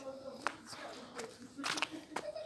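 Footsteps and handling noise from a phone being carried while walking, a few short knocks spread through the moment, with faint voices underneath.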